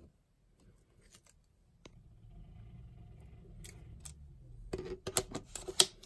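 Light clicks and scrapes of a metal camera lens being handled, then a quick run of sharp clicks near the end as it is fitted and twisted onto a Nikon camera's bayonet mount.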